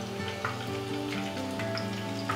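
Minced-mutton balls deep-frying in hot oil, a steady sizzle, under soft background music, a simple melody of held notes.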